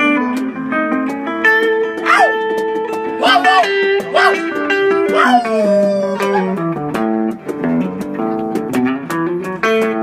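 Live guitar music, a steady line of picked notes, with four short sliding vocal cries that rise and fall over it in the middle.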